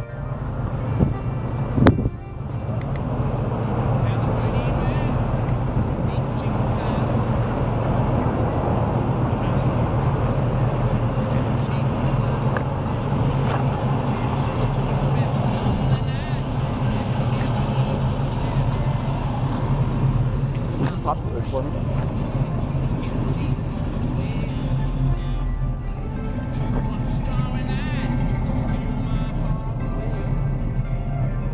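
1965 Chevelle's 327 V8 idling steadily, a low even running sound, with two short sharp knocks about one and two seconds in.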